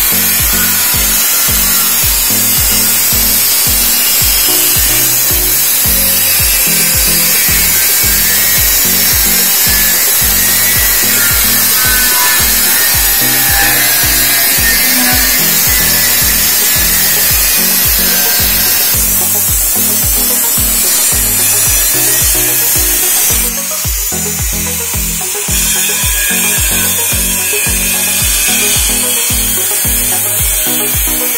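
Angle grinder with a cutting disc running and cutting into the stainless steel top of a beer keg: a steady, high-pitched grinding of metal. Background music with a steady beat plays underneath.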